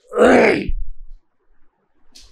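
A man's short wordless vocal sound, falling in pitch and lasting about a second.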